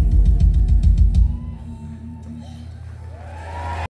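Live country band with drum kit and guitar playing loud drum hits that end about a second and a half in, followed by a quieter sustained ring with some voices rising near the end. The sound cuts off abruptly just before the end.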